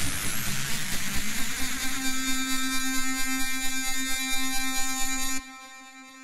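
Hard trance music at a break: a hiss of white noise for about two seconds, then a single sustained buzzing synth note that holds steady and cuts off abruptly about five seconds in, leaving a short fading tail.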